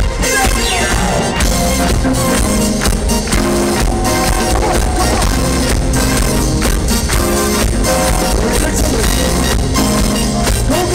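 Live funk band playing a dance groove at full volume, with heavy bass and a steady beat, recorded from within the audience with rough, bass-heavy sound.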